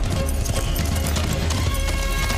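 Horse hoofbeats at a gallop, a film sound effect, with background film music playing underneath.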